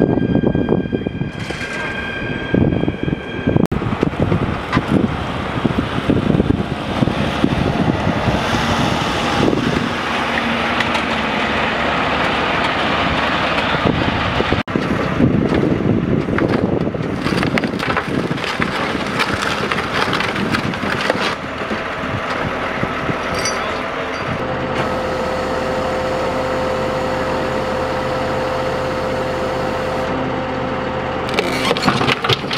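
Road vehicle noise, changing with the cuts. In the last few seconds a tow truck engine runs at a steady hum while its winch straps pull on an overturned car to right it.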